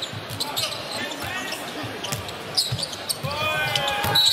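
A basketball being dribbled on a hardwood court during live play, with indistinct voices and arena noise underneath.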